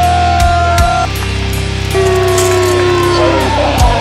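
Rock background music with long, held lead electric-guitar notes that bend in pitch, over steady bass and a regular drum beat.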